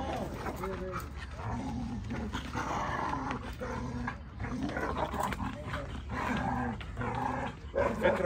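A dog growling and barking repeatedly while it grips a bite toy in its jaws and refuses to let go.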